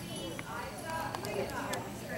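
Hoofbeats of a large pony cantering on the sand footing of an indoor arena, with a few sharp clicks among them, under the chatter of spectators.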